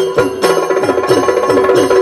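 Yakshagana percussion accompaniment: rapid strokes on a barrel drum, each dropping in pitch, over a steady ringing of bells or small cymbals.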